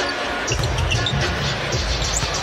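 A basketball dribbled on a hardwood court amid steady arena crowd noise.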